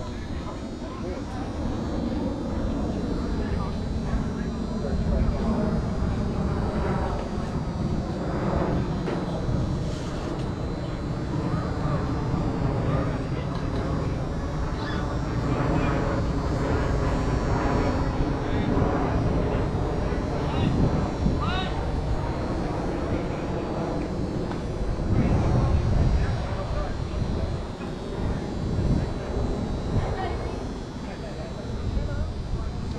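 An airplane flying overhead: a steady low rumble that swells near the end, with indistinct voices in the background.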